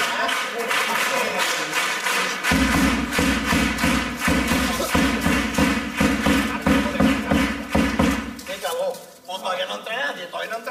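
Carnival chirigota group's live instrumental music: drum strokes in a steady quick beat, joined about two and a half seconds in by a deep low part that drops out about a second and a half before the end.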